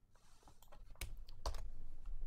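A few keystrokes on a computer keyboard, quiet, with the sharpest clicks about a second in and again around a second and a half in.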